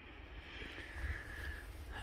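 Faint, steady outdoor background noise with a low rumble and no distinct event.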